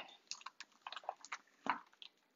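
Faint, scattered clicks and crinkles of a clear plastic photopolymer stamp-set case being picked up and handled, with a slightly louder tap a little before the end.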